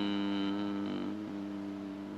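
A man's low voice holding one long, steady hum, the drawn-out end of a word hesitated on in mid-sentence. The pitch wavers slightly about a second in, and the hum slowly fades.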